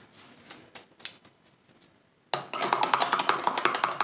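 A few faint brush dabs on paper, then about two seconds in a loud, dense crackling rustle of paper being handled as a hand presses and shifts the sheet.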